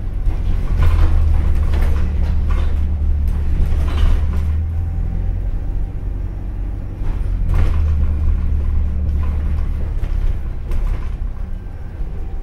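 Inside an Alexander Dennis Enviro400H hybrid double-decker bus on the move: a steady low rumble from the drivetrain and road, with a deep drone that swells twice. Short knocks and rattles come from the bus body and fittings.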